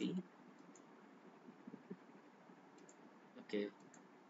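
A few faint computer mouse clicks while working in Excel, with one louder short sound about three and a half seconds in.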